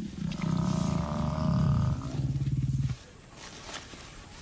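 Lions growling as they attack a Cape buffalo bull: one long, rough, low growl that stops about three seconds in.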